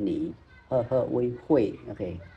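Speech only: a teacher's voice speaking in short phrases with sharp rises and falls in pitch.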